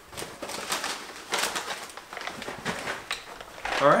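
Plastic snack bags crinkling and rustling as they are handled, in irregular bursts.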